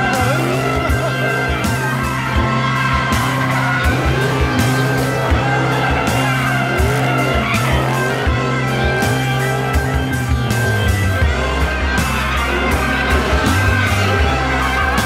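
A car doing donuts, with tires squealing and the engine revving as it spins, under background music with a steady beat.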